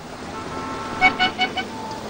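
A vehicle horn beeping in a quick run of about five short toots about a second in, over steady traffic noise.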